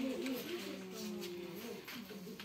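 Indistinct voices in a small room, with a long drawn-out vocal tone in the middle.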